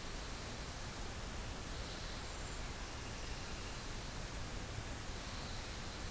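Steady hiss of room tone and recording noise, with a couple of faint, brief rustles.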